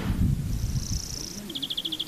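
Birds chirping outdoors: a high, buzzy trill in the first second, then a rapid run of short chirps from about halfway, with a low rumble at the start.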